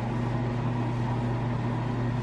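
Steady low mechanical hum with no change in level.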